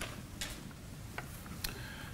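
Quiet room tone with three faint, sharp clicks spread across two seconds.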